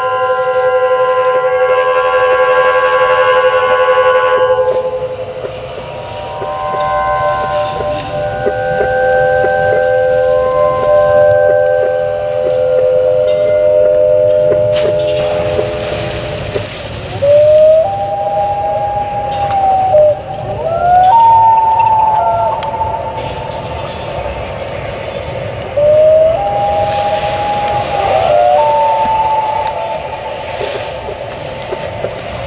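Several steady pitched tones sounding together, then, from about halfway, single tones that glide up, hold and slide back down, over a low hiss.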